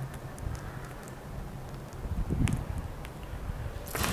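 Quiet room hum with a few faint clicks and rustles as a hollow-carbon fishing rod is held and bent by hand.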